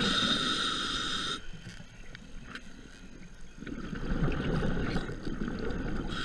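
A scuba diver breathing through a regulator underwater. A hissing inhale lasts about the first second and a half, then after a lull the low rumble of exhaled bubbles builds from a little past halfway.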